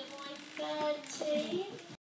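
Children's high voices singing in short held notes, cutting off abruptly near the end.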